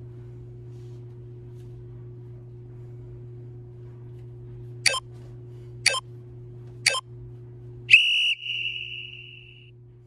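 Interval timer counting down: three short beeps a second apart, then one longer, higher beep that signals the start of the exercise interval.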